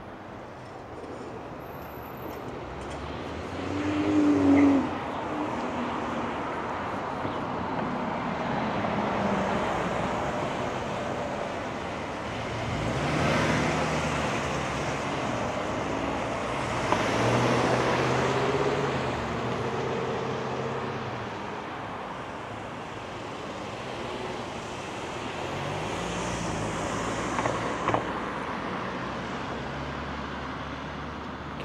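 Road traffic: cars driving past one after another, their tyre and engine noise swelling and fading several times. The loudest pass comes about four seconds in.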